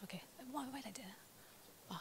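Quiet speech: a brief "okay", then a short, low-voiced remark, then a pause with only faint room tone.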